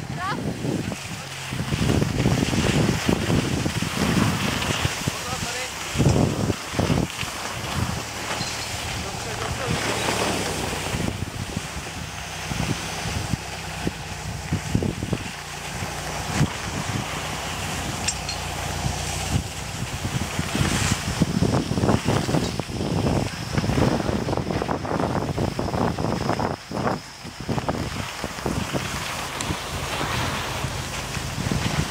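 Wind rushing and buffeting on the microphone, over a steady hiss of skis sliding on snow.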